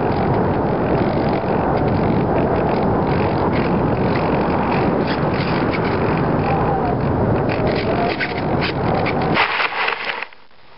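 Loud, steady rush of air over the onboard camera of a Multiplex Easy Star RC plane flying low. About nine and a half seconds in, a short scraping rustle as the plane touches down and slides through grass, after which the rush dies away.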